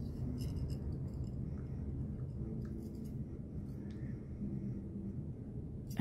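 Faint clicks and light scraping from metal autoharp string anchors and their cut string ends being handled, over a steady low room hum.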